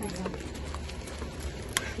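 Scattered light clicks and knocks of discarded items being handled at a dumpster, with a sharper click near the end and faint voices in the background.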